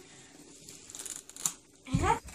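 Faint rustling and crinkling of a small paper box and flowers being handled by hand, with a few light ticks a little after a second in.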